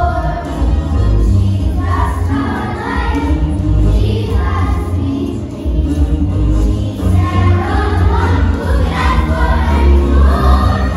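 A group of children singing together to a recorded accompaniment with a strong, steady bass.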